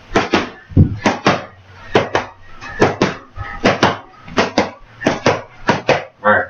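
Boxing gloves smacking against padded focus mitts in quick combinations, sharp hits coming mostly in close pairs, roughly every half second to a second.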